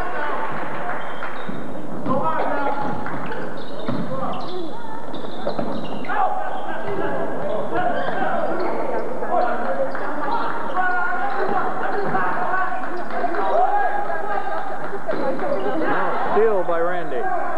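Overlapping voices of players and spectators echoing in a gymnasium during live basketball play, with a basketball bouncing on the hardwood floor and a few sharp knocks.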